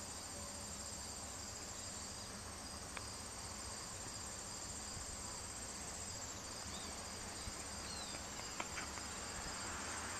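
Crickets chirping steadily in a high-pitched, continuous trill, with a couple of faint clicks.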